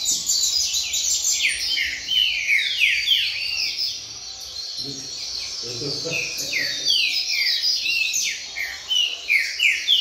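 Several caged double-collared seedeaters (coleiros) singing at once in the 'fibra' style, their songs overlapping in quick series of down-slurred whistled notes. The chorus thins briefly near the middle, then fills in again.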